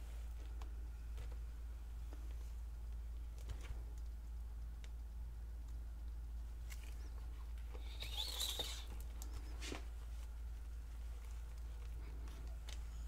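Faint scattered taps and rubbing of latex-gloved hands wiping wet acrylic paint from the edges and underside of a canvas, with a brief louder rustle about eight seconds in, over a steady low hum.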